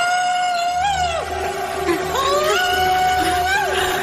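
A woman screaming twice, two long high cries each rising sharply at the start and held for over a second, over a low sustained drone in the film score.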